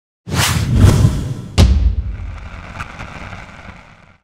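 Logo-intro sound effects: two loud whooshes, then a sharp, deep boom about a second and a half in that rings out and slowly fades away.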